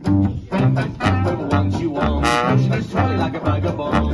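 Small acoustic swing band playing live: plucked upright double bass keeping a steady beat about twice a second, under trombone and clarinet lines with banjo strumming, in an instrumental passage with no singing.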